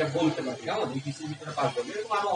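Speech only: a person talking, as in a spoken lecture.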